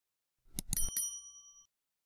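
A few quick click sound effects, then a bright bell 'ding' that rings for well under a second and fades: the notification-bell sound of a subscribe animation.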